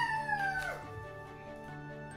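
A child's long, high-pitched cry gliding downward in pitch and breaking off about a second in, over steady background music.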